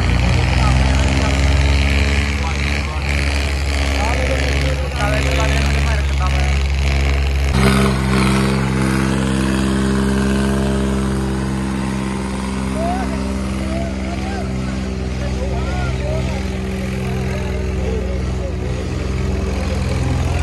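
New Holland tractor's diesel engine running at a steady speed while dragging a leveller over the dirt arena. Its note gets fuller and louder about eight seconds in as the tractor passes close. Voices can be heard in the background.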